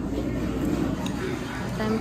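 Restaurant dining-room background noise: a steady hum with faint distant chatter. A light click comes about halfway through, and a voice begins right at the end.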